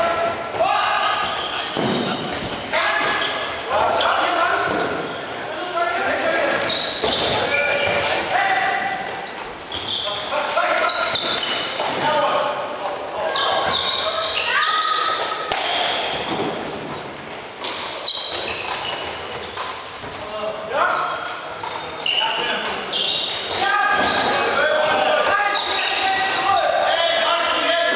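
Floorball played in an echoing sports hall: players shouting and calling, with frequent sharp clacks of sticks against the plastic ball.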